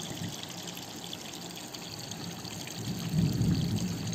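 Steady background noise with no words, and a low rumble that swells briefly about three seconds in.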